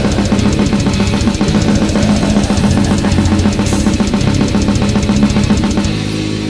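Death metal played by a band: fast, evenly spaced drumming over low distorted guitars and bass. The fast drumming stops right at the end.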